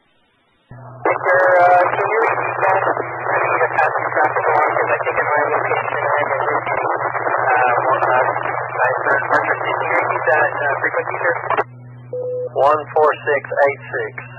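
Speech over a two-way radio repeater heard through a scanner, thin and narrow-band. The channel opens suddenly under a second in with a steady low hum beneath the voice. The dense talk runs until nearly twelve seconds in, then gives way to quieter, more broken speech.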